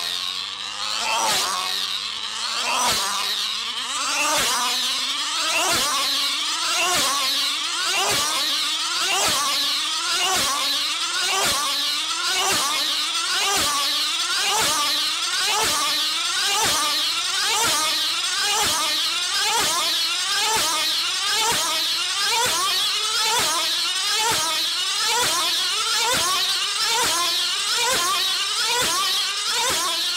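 A tether car's tiny high-revving two-stroke engine screaming as the car laps the circular track on its wire. Its pitch swoops up and down each time it passes, over and over. The laps come quicker over the first several seconds as the car gathers speed, then settle into a steady rhythm.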